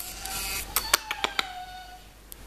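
A puppy gives a faint, thin, slightly falling whine. About a second in comes a quick run of about six sharp clicks.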